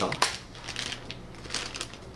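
Thin plastic candy packets crinkling irregularly as they are handled and turned over in the hands.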